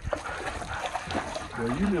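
Light water splashing and sloshing from a dog paddling through lake water close to a dock. A person starts speaking near the end.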